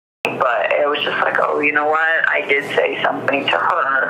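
A person talking over a telephone line, the voice thin and cut off above and below as on a phone call. It begins abruptly a moment in, after a brief silence.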